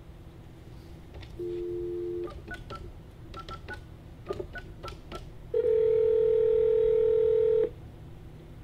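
Desk telephone being dialed: a brief dial tone, then about ten quick keypad beeps as a number is punched in, followed by a steady ringing tone on the line for about two seconds.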